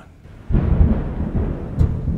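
Loud thunder rumble, a film sound effect, starting suddenly about half a second in and rolling on deep and low.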